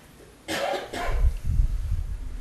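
A person coughing close to a table microphone: a harsh burst about half a second in, followed by a second or so of low thumps as the coughs hit the mic.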